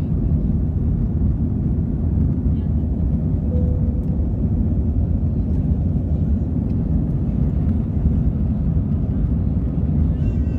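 Steady low roar of engine and airflow noise heard inside the cabin of an Airbus A320 climbing after takeoff.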